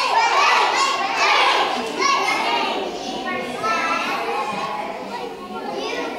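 Many young children's voices talking and calling out at once, an overlapping chatter with no single clear speaker.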